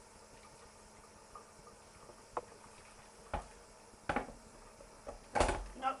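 A metal spoon clinking and scraping in a roasting tin a few times as hot water is stirred into the pan juices to make gravy, with a louder splash of water going in near the end.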